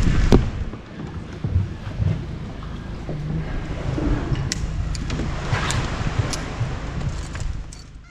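Sounds aboard a small open boat: a low, steady rumble with a few sharp knocks and clicks while a climbing rope is handled, fading out at the end.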